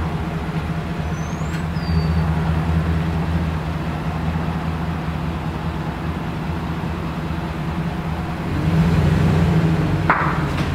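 Chevrolet Silverado 2500HD pickup's V8 engine running at low speed while slowly reversing a travel trailer, with a brief rise in engine sound near the end. A short bird chirp comes about a second in.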